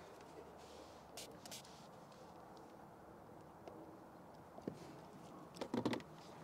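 Faint handling sounds: a few soft clicks and light rubbing as fingers press and slide a wet plastic screen-protector film over a car's gauge cluster, against a quiet background.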